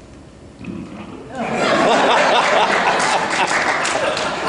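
An audience in a large hall bursts into loud applause and laughter just over a second in, after a brief low sound into the microphone.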